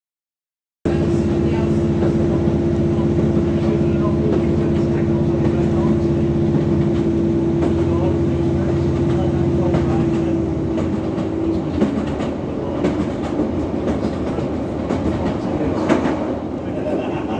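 Train running at speed, heard from inside the carriage. The noise starts abruptly about a second in, with a steady hum and a held tone that stops about eleven seconds in, leaving an uneven rumble of the wheels on the rails.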